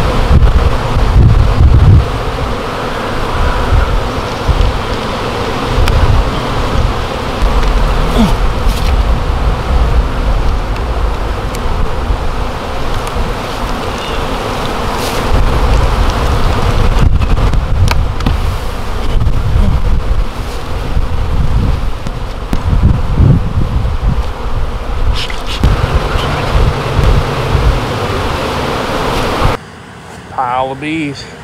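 A large honey bee colony buzzing loudly, thousands of bees stirred up around their comb in a freshly split-open tree limb. Irregular bursts of low rumble come and go under the buzz.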